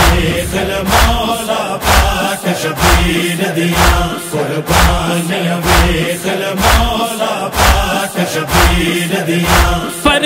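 Interlude of a noha: a chorus chants in sustained notes over a steady, deep thudding beat, about one beat a second.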